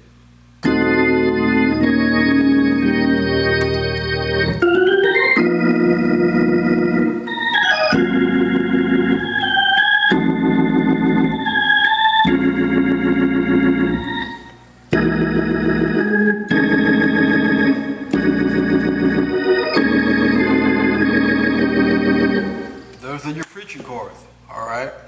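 Hammond organ playing a slow gospel preaching-chord progression in E-flat: sustained chords on both manuals over a pedal bass, changing every few seconds, with quick upward slides in the top notes between some chords. There is a short break about fourteen seconds in.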